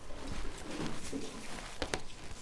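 Faint handling sounds as faux-leather (PU) bag handles are moved and laid out on a tabletop, with a couple of small sharp clicks near the end.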